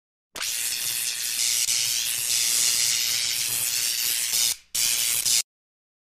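A steady, high-pitched hiss with a slowly sweeping, swishing character, broken once briefly near the end and then cut off suddenly.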